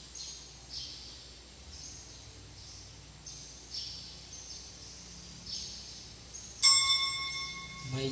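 A small bird chirps over and over, about once a second, each chirp a short falling note. About six and a half seconds in, an altar bell is struck once and rings on, slowly fading; it is the loudest sound.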